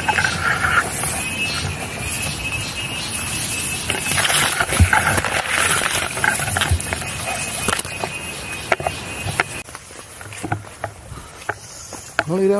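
Tall wet grass and leaves rustling and brushing against the camera as it is pushed through thick vegetation, with many crackles and snaps of stems. It becomes quieter for the last few seconds.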